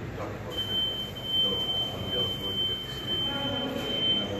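A steady, high-pitched electronic tone, like a buzzer or alarm, starts about half a second in and holds without a break, over a low murmur of voices in a large, echoing room.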